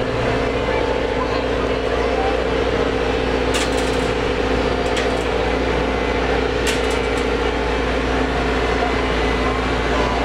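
Diesel engine of a Takeuchi TB175W wheeled excavator running steadily as the machine drives slowly by, with a constant hum over a low rumble.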